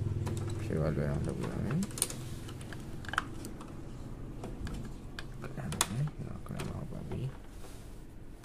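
Light clicks and taps of a screwdriver and plastic parts being handled inside an opened ink-tank printer's gear and motor assembly, with voices talking in the background.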